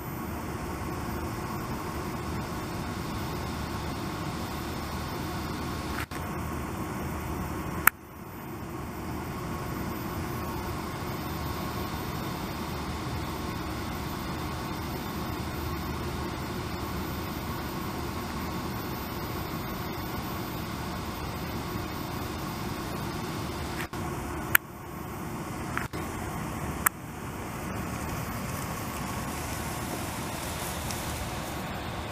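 Steady outdoor background hum broken by a few sharp clicks with brief dropouts, the largest about eight seconds in and twice more near the end.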